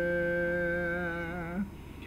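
A voice holding one long hummed or sung note, which wavers slightly and stops about one and a half seconds in.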